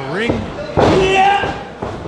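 A thud on the wrestling ring about a second in, with a loud, drawn-out vocal shout over it, and another knock near the end.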